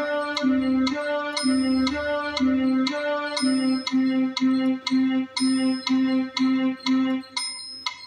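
Casio CT-X700 electronic keyboard on a piano voice playing a simple right-hand melody that moves between C and D, over a metronome clicking at 120 beats a minute with a higher chime on every fourth beat. The notes are held longer at first and then come one per beat, stopping shortly before the end while the clicks go on.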